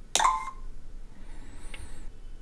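A short electronic chime, the feedback sound that an H5P quiz plays when the right answer is clicked. It starts suddenly just after the start and fades within about half a second.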